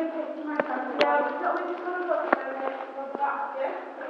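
Indistinct voices talking, broken by three sharp clicks or knocks about half a second, one second and two seconds in.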